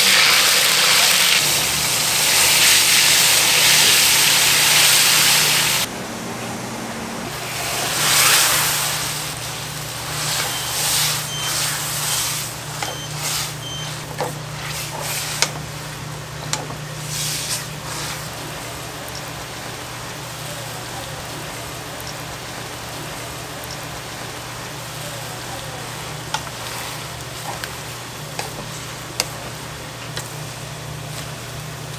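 Liquid poured into a hot pan of dark soy-based sauce sizzles loudly for about six seconds, cutting off abruptly, with a second, shorter swell of sizzling soon after. Then come quieter scrapes and taps of a wooden spatula stirring glass noodles in the pan, over a steady low hum.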